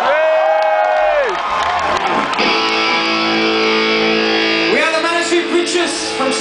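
Electric guitar through a festival PA, ringing out held notes from about two and a half seconds in. A loud shouting voice comes before it, and voices return near the end.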